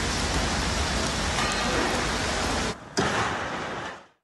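Steady, rain-like rushing noise that drops out briefly near three seconds, comes back with a sharp start, then cuts off at the end.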